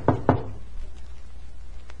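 Knocking on a door: a quick run of sharp raps at the very start, a radio-drama sound effect.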